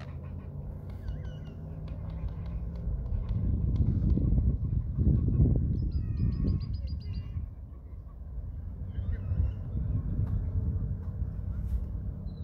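Small birds chirping, with a quick run of high, evenly spaced notes about halfway through. Underneath is a low outdoor rumble that swells in the middle.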